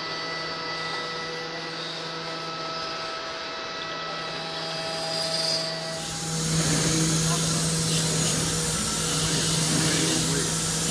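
TARUS HM5L five-axis CNC machining center milling a blue model block: a steady multi-tone spindle whine over the hiss of cutting. About six seconds in the sound changes to a louder, rougher machine noise with a strong steady low hum.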